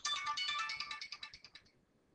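Mobile phone ringtone playing a melodic tune of high tones, which dies away about one and a half seconds in.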